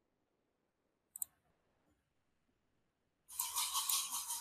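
A quick double click about a second in, likely a computer mouse button, then from about three seconds in a loud, scratchy rustling noise that continues.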